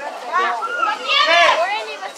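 Children in the crowd shouting and yelling in high, rising and falling voices, in several loud outbursts.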